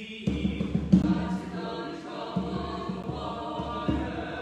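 A small choir of four voices, women and a man, singing a hymn together. A new phrase begins just after the start, following a short break in the singing.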